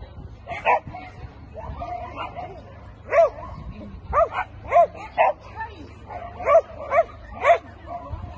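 Dog barking: about eight short barks, one near the start and the rest coming quickly one after another in the second half.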